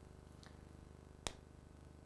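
Near silence with a steady low hum, broken by one sharp click about a second in and a fainter tick just before it.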